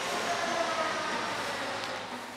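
Steady hiss of construction-site noise through a large open terminal hall, with a faint machine whine in the middle.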